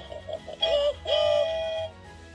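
Electronic jingle from a Hey Duggee Smart Tablet toy: a few short beeping notes, then two sliding synthesized notes, the second held for nearly a second before it stops.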